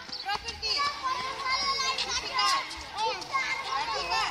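Children playing: several high-pitched young voices talking and calling out over one another.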